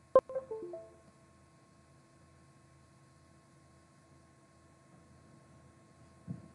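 A sharp click, then a short run of electronic notes from the computer's USB device chime, the sound Windows makes when a USB device such as the micro:bit is disconnected or connected. After that only a faint steady hum.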